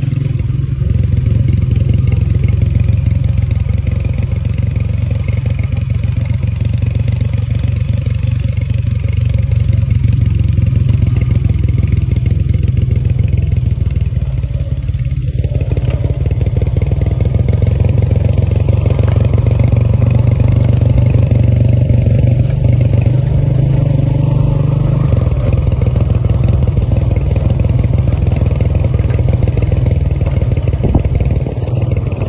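Small motorcycle engine running steadily while riding along a dirt road, heard from the rider's seat. Its note shifts slightly near the end.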